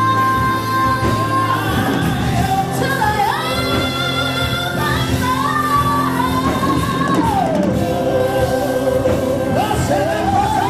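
Live gospel worship music: a voice sings long held notes that slide up and down, dropping to a low held note near the end, over steady band accompaniment.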